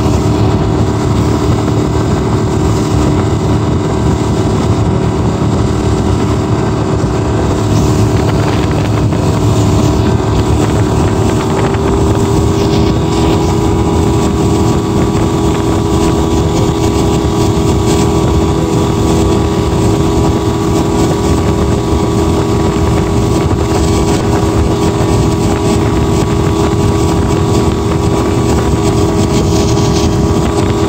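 Honda 150 hp four-stroke outboard motor running steadily at towing speed. Its hum rises slightly in pitch about twelve seconds in.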